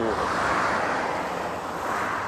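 Motorway traffic: the tyre and engine rush of a vehicle passing, swelling about half a second in and slowly fading away.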